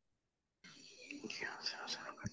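Faint, whispery speech heard over a video-call microphone, starting a little over half a second in after dead silence.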